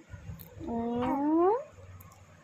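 A baby's single drawn-out coo that glides steadily upward in pitch for about a second, a happy squeal.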